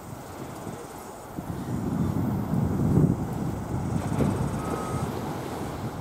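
Wind buffeting the camera microphone: a low, rumbling noise that swells through the middle and eases off toward the end.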